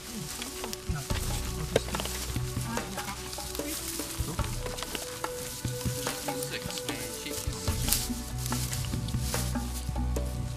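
Dry grass crackling and rustling under moving feet and paws, a dense run of small crackles and clicks, with a low rumble underneath.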